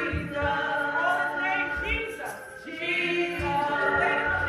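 Church congregation and worship leader singing a gospel praise song together, several voices gliding up and down through a slow melody.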